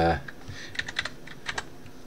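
Typing on a computer keyboard: a run of short, irregular keystroke clicks.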